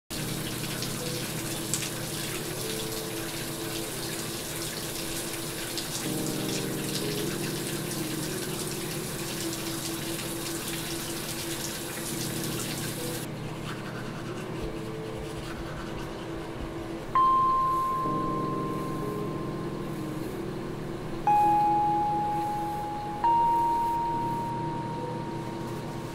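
Shower water running in a steady hiss, cutting off suddenly about halfway through. Throughout, low sustained music chords change every few seconds, and near the end three clear chime-like notes ring out one after another, each struck and fading.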